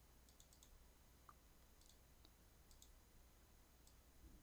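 Near silence broken by faint computer mouse clicks, quick and in small clusters of two to four, over a low steady hum.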